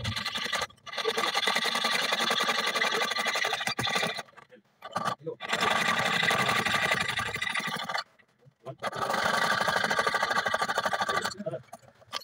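Jeweller's piercing saw cutting through a metal ring band, with fast back-and-forth rasping strokes in three long spells and short pauses between them.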